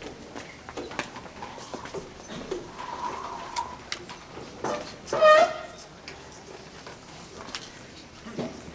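Hall room noise from a waiting audience: scattered rustles, shuffles and small knocks, with a short high-pitched cry, like a small child's, about five seconds in.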